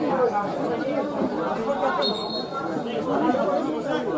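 Indistinct chatter of several voices talking over one another around a football free kick.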